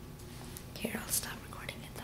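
A person whispering briefly, a soft breathy voice heard a little over half a second in and fading by near the end, over a steady low room hum.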